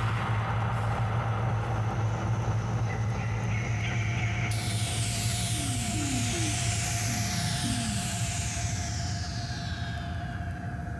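Synthesized film soundtrack: a steady low electronic drone, joined about halfway through by many high tones sliding downward in overlapping sweeps and a few short falling blips.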